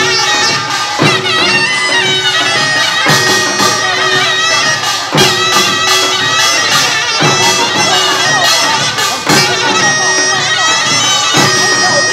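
Korean nongak farmers' band music: a shrill, reedy taepyeongso shawm plays the melody over rapid small gongs and drums. A heavy beat lands about every two seconds, with a ringing tone after each.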